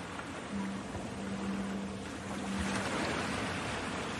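Ocean surf: an even wash of waves breaking on a beach. A steady low tone is held from about half a second in until about three seconds in.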